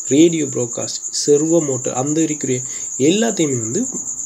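A man talking, with a steady, high-pitched trill running under the voice.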